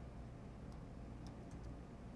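Quiet room tone with a low steady hum and a few faint computer mouse clicks scattered through it.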